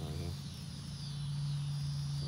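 A steady low hum, with faint insect chirring high above it.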